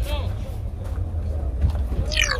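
People talking in the background, a voice strongest right at the start, over a steady low rumble.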